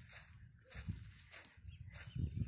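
Faint, soft footsteps on sand, a few dull thuds about half a second apart, with light rumble from the phone's microphone being handled.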